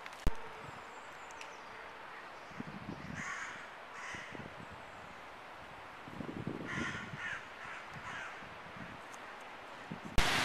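A bird calling outdoors in a few short, harsh bursts: around three seconds in, again a second later, and a cluster near seven seconds. A single sharp knock comes just after the start.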